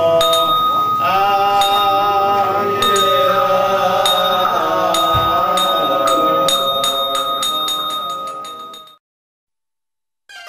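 Buddhist monks chanting a prayer together with a ringing struck bell, its strikes coming faster and faster until the sound fades and stops about nine seconds in.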